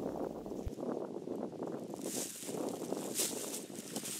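Footsteps crunching and rustling through dry fallen leaves as a person walks away, in uneven patches.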